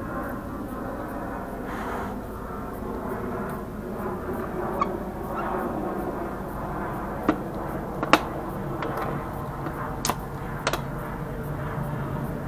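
A steady low hum runs throughout, with a few sharp clicks and taps from locking pliers being released and a 3D-printed resin bullet mold being handled and opened.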